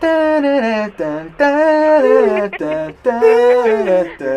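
A person singing a wordless tune in three long, held phrases with sliding pitch, as mock on-hold music while a phone call is jokingly "put through".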